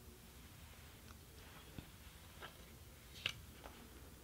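A few faint, scattered clicks and taps of a wooden rigid heddle loom being worked by hand, the sharpest about three seconds in, over quiet room tone.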